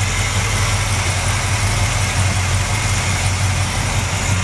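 Big-block 454-cubic-inch Chevrolet V8 idling steadily with the hood open, not being revved.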